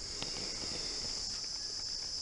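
Steady, high-pitched chorus of insects singing in woodland, unbroken throughout.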